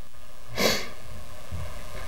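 A single short, sharp breath through the nose, about half a second in, over steady room hiss.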